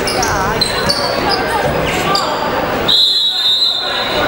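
Basketball shoes squeaking in short chirps on a hardwood gym floor, with players' voices, during a scramble for a loose ball. Near the end a referee's whistle is blown once, a high steady blast lasting just under a second.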